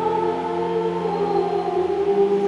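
Church choir singing long held notes at several pitches at once.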